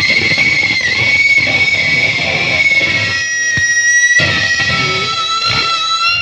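Electric guitar played loud, with long held high notes ringing for several seconds over busier playing beneath. A new held note takes over about four seconds in.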